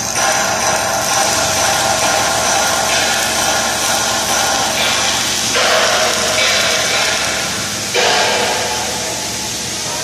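Electric arc welding: the steady hiss and crackle of the arc, changing abruptly every few seconds as the weld goes on, with music faintly underneath.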